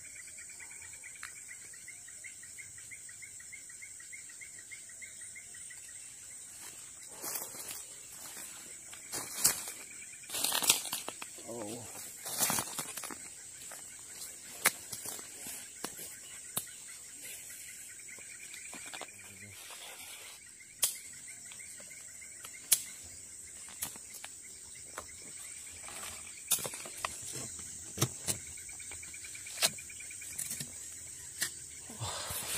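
Tropical forest insects keep up a steady high buzz, joined by a pulsing trill for stretches. Over this come sharp snaps and crackles of twigs and dry leaves being trodden and pushed through, thickest about seven to thirteen seconds in, then as single snaps.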